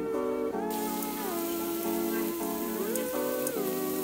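Background music with a melody of held, sliding notes, joined about a second in by a steady hiss of pork belly sizzling on a hot cast-iron Korean barbecue grill.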